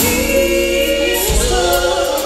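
Live gospel music: a women's vocal group singing held notes in harmony over a band with electric bass and drums, with a sharp strike at the very start.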